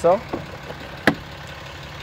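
A single sharp click about a second in as the truck's fold-out tow mirror is pushed in against its pivot stop, over steady low background noise.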